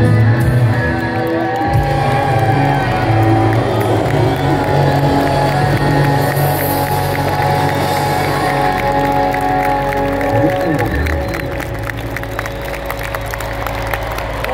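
Live rock band holding the final chord of a song as it rings out, over a stadium crowd cheering and applauding. The held notes fade over the last few seconds while the clapping and cheering carry on.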